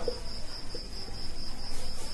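A steady high-pitched trill-like tone runs throughout over a low hum, with a faint scratch of a marker on a whiteboard near the end.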